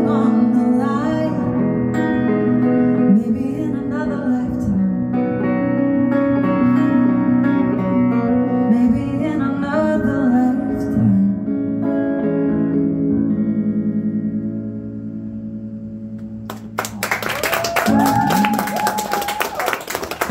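A woman singing live with an electric guitar, the final chord ringing on and fading away. About three-quarters of the way through, the audience breaks into applause with a cheer.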